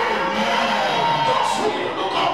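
Church music playing while a congregation cheers and shouts, with a man's voice through a microphone gliding up and down over it.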